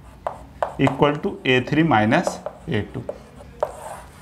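Marker pen writing on a whiteboard, with short tapping clicks and rubbing strokes as an equation is written out. A man's voice speaks in between the strokes.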